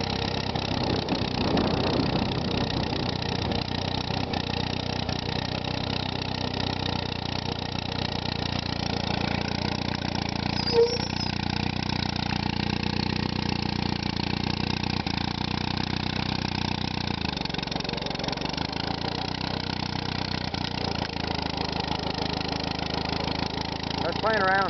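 Massey-Harris Pony tractor's four-cylinder Continental flathead engine running steadily as the tractor drives along, with one brief click about eleven seconds in.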